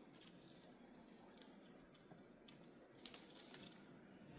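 Faint crackling and rustling of moss and orchid roots being picked apart by fingers, near silence otherwise, with a few sharper crackles about three seconds in.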